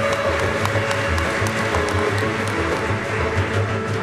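Large folk orchestra playing a čoček, bowed violins carrying the melody over a steady pulsing bass beat, with crisp percussive taps on top.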